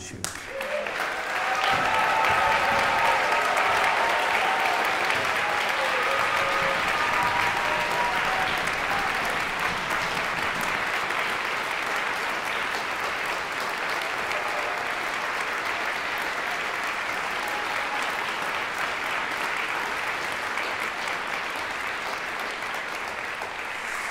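Hall audience applauding, swelling within the first two seconds and then slowly tapering, with a few held cheers or whoops over it in the first several seconds.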